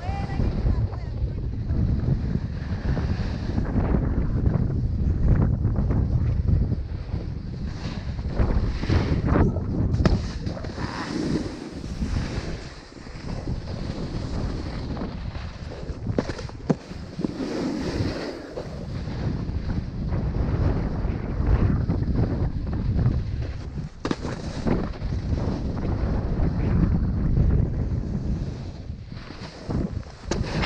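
Wind noise on an action camera's microphone while snowboarding downhill, a continuous low rumble that swells and eases, mixed with the hiss and scrape of the snowboard's edge on packed groomed snow.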